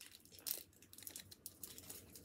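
Faint, irregular crinkling of sweet wrappers being handled and torn open: small Galaxy chocolates being unwrapped by hand.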